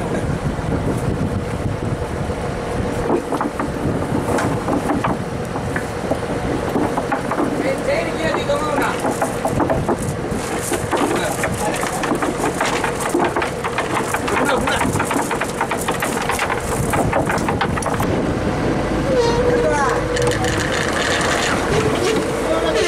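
Trawler's engine running steadily under men's voices calling out as the trawl net is handled on deck.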